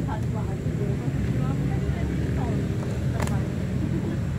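Steady low rumble with faint voices in the background, and one sharp click about three seconds in.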